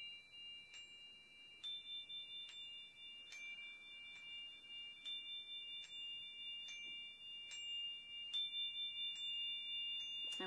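A metal chime instrument played with a padded mallet: several high, steady ringing tones held throughout, kept sounding by light taps a little faster than once a second, with a higher tone joining about a second and a half in.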